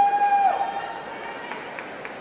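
A single high, held yell from someone in the arena audience, the kind of cheer called out to a guard taking the floor. It ends with a falling tail about half a second in, leaving faint arena hubbub.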